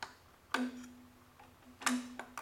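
Metal distributor housing clicking against the engine block as it is lowered in and its gear meshes: three sharp clicks, with a low steady tone starting at the second click.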